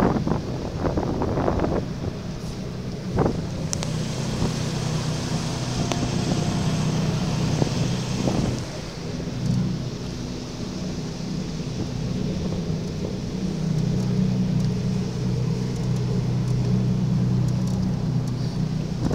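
Jet boat engine running steadily, its low drone dipping briefly about halfway through, under a rushing hiss of wind and water.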